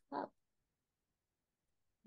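A woman says a short "oh", then there is silence, with the sound cut right down to nothing.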